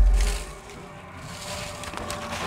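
Camera handling noise as someone climbs down into a narrow earth tunnel: a heavy low thump dies away in the first half second, then faint scraping and rustling.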